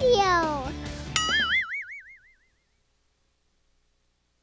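Closing music with sliding, swooping pitched sounds that stops about a second in on a single wobbling, warbling tone which fades away, followed by silence.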